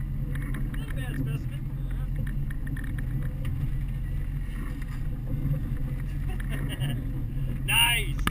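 Twin Suzuki outboard motors running steadily at low speed, a constant low hum under the wash of water at the stern.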